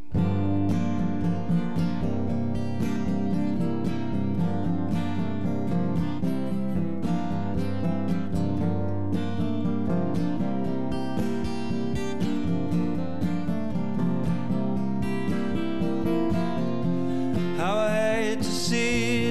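Solo acoustic guitar strummed in a steady chord pattern, the introduction of a song played without any band. It starts abruptly at once.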